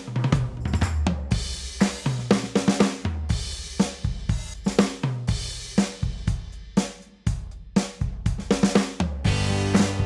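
Yamaha Genos Revo Drums kit samples played from the keyboard: an irregular run of kick, snare, hi-hat and cymbal hits, each one drawn from a slightly different sample through wave cycling. Held pitched notes come in near the end.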